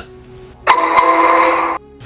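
A short edited-in sound effect: a burst of hiss with a steady tone running through it, about a second long. It cuts in and out abruptly.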